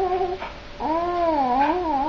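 A baby's sustained cooing vocalisations, its 'singing': one held note ends shortly in, then after a brief pause a longer note wavers down and back up in pitch.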